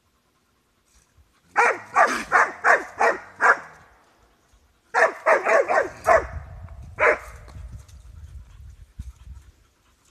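Hound barking at a trapped raccoon: a quick volley of about six barks, then a second volley of about five, then one more bark. A faint low rumble runs under the last few seconds.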